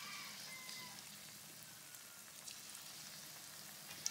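Battered chicken pieces deep-frying in oil in a wok: a faint, steady sizzle with a few light crackles.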